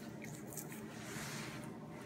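Quiet room tone: a faint, even hiss with no distinct sound event.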